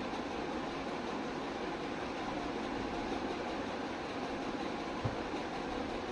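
Steady background noise with the soft rustle of a satin saree being gathered and folded by hand, and a single soft thump about five seconds in.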